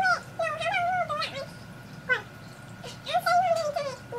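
High-pitched wordless vocal sounds that slide up and down in pitch, in three drawn-out stretches, the last near the end.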